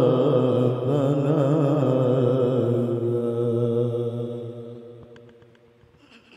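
A male Quran reciter's voice in tilawah style, drawing out one long ornamented note whose pitch wavers, then settles and fades away over the last two seconds as the phrase ends.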